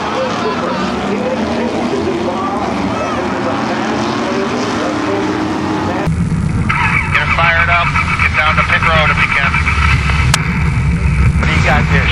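About halfway, the sound cuts to inside an SK Modified racecar: its V8 engine running at low speed with a low rumble, under a tinny voice on the radio. Before that, a noisy mix of distant race-car engines and voices.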